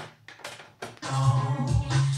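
Technics RS-BX501 cassette deck's transport clicking several times as the play key is pressed after a rewind, then about a second in music starts playing back from the cassette.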